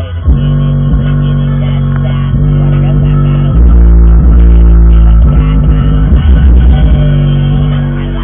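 Bass-heavy music played very loud through two Digital Designs (DD) 510 car subwoofers, recorded right beside the subwoofer box. The deep bass grows louder about three and a half seconds in.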